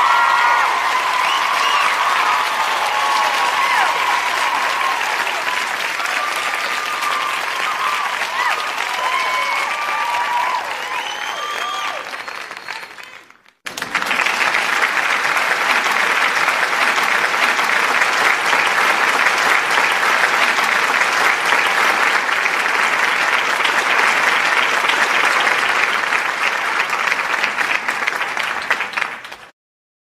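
Audience applause with voices calling out over it, fading away about 13 seconds in. After a moment of silence a second, denser stretch of applause starts and fades out just before the end.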